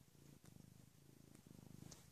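Tabby cat purring faintly, a low rapid rumble with brief breaks.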